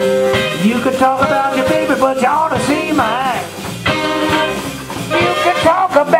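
Live blues band playing an instrumental stretch between vocal lines, with electric guitar, saxophone, bass and drums.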